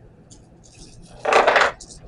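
Plastic pump-lid parts being handled and set down on a wooden table: faint rustles, then a loud half-second clatter a little past a second in.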